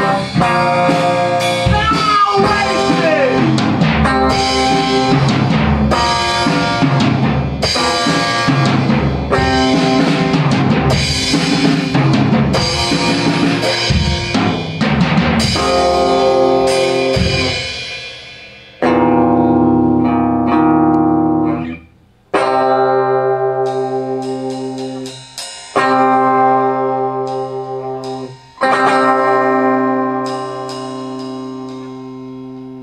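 A drum kit, electric guitar and piano play an instrumental rock tune together, with a steady drum beat under guitar and piano. About two-thirds of the way through, the beat stops and the band strikes four long chords together, each left ringing as it fades, closing the song.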